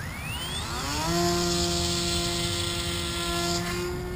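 RC model airplane's motor and propeller spinning up, a whine rising in pitch over about a second, then running at a steady pitch and cutting off just before the end.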